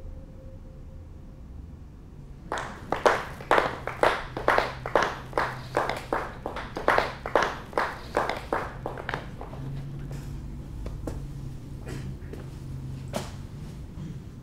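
A run of about sixteen sharp slaps at an even pace, a little over two a second, starting a couple of seconds in and stopping after about seven seconds. A few scattered softer clicks follow over a low steady hum.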